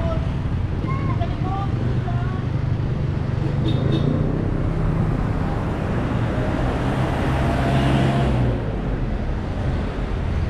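Street traffic: motor vehicle engines running close by, a steady low rumble that builds to a peak about eight seconds in and then drops away.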